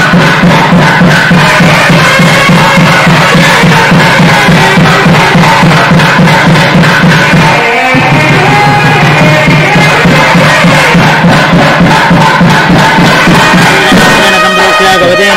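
Loud traditional temple music: a wind-instrument melody over a steady drone, with a drum beating in a quick, regular rhythm. The drone breaks off briefly about eight seconds in.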